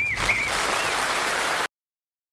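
A warbling, birdlike whistle near the end of the song, fading about half a second in and giving way to audience applause that cuts off suddenly near the end.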